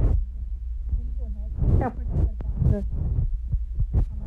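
Footsteps and the jostling of a handheld phone while walking, heard as dull thumps roughly every half second over a steady low rumble, with faint voices in the background.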